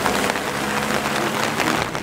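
Steady hiss of rain falling on wet asphalt, with a car's engine running low beneath it as the Toyota 86 pulls away.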